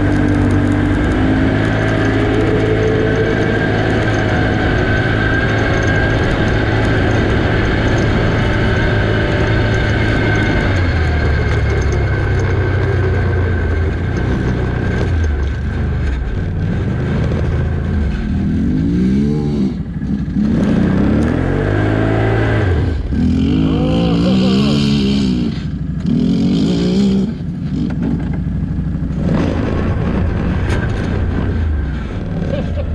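Can-Am Outlander 650 ATV's V-twin engine running steadily at riding speed for the first ten seconds or so, then revving up and down in several quick throttle bursts in the second half.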